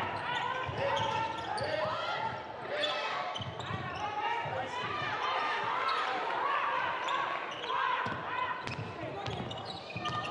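A basketball being dribbled on a hardwood court, with voices calling out on and around the court in a near-empty arena.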